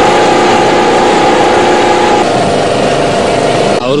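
A small engine running steadily and loudly, its pitch stepping down slightly about halfway through.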